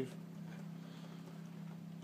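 Quiet room tone with a faint, steady low hum; no accordion is sounding.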